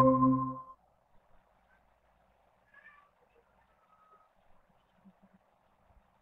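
Short electronic notification tone, the Google Meet join chime, sounding at the start and fading out within the first second as a participant's presentation joins the call.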